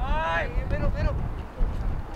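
Shouting from players or coaches out on the soccer pitch: one long, loud call in the first half second that bends down in pitch, then a couple of shorter calls. Low wind rumble on the microphone runs underneath.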